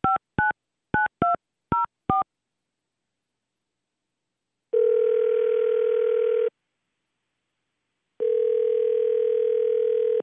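A telephone number being dialled on a touch-tone keypad over a phone line: a quick string of short two-note beeps over the first two seconds. After a pause, the ringback tone of the called phone ringing sounds twice, each ring a steady tone of about two seconds.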